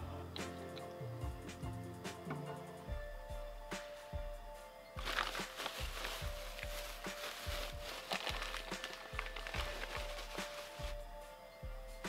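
Background music with a steady beat. From about five seconds in, a paper bag rustles and crinkles for several seconds as a hand reaches into it.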